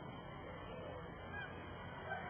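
Faint, steady outdoor background noise with no clear event in it.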